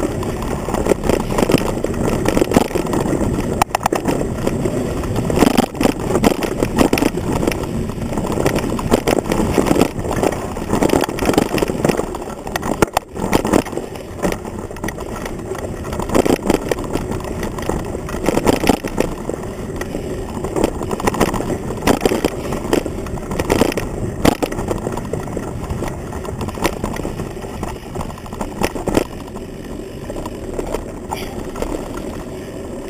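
Mountain bike ridden fast over a rough dirt trail, picked up through a handlebar camera mount: a continuous rumble and rattle of the frame and tyres, broken by frequent sharp knocks from bumps.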